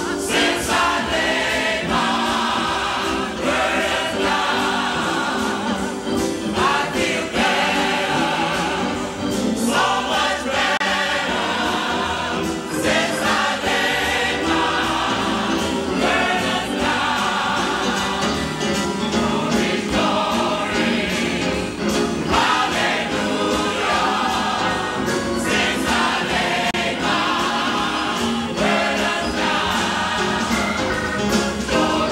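A gospel choir of men's and women's voices singing together in sustained phrases.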